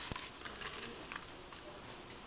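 Folded paper slips rustling and ticking as a hand rummages through them inside a porcelain pot, with a sharp click just after the start.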